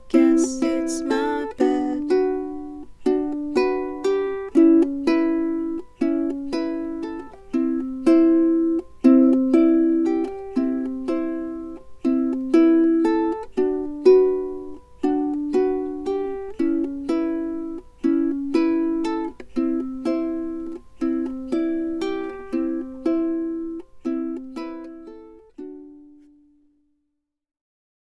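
Ukulele playing an instrumental outro of repeated strummed chords, each strum ringing and fading. A last chord rings out and dies away about two seconds before the end.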